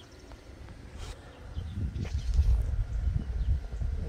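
Wind buffeting the phone's microphone: a low, gusting rumble that builds from about a second and a half in.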